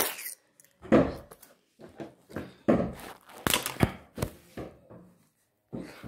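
Irregular thumps and rustles of objects and the recording device being handled at close range, a dozen or so short knocks with gaps between them.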